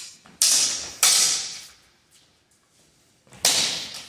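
Practice longswords clashing blade on blade during sparring: three sharp, bright strikes, two about half a second apart early and one more near the end, each with a short ring.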